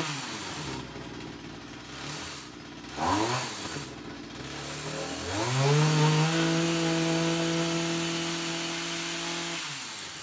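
Stihl two-stroke line trimmer engine driving a converted hedge trimmer attachment on a test run. The engine drops from high revs to idle at the start, is blipped briefly about three seconds in, then revved up and held high from about five seconds in before dropping back to idle near the end.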